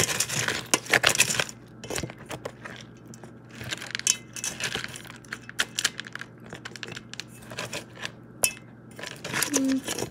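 A spoon clinking and scraping against a bowl as dog food is stirred, in many quick, irregular clicks.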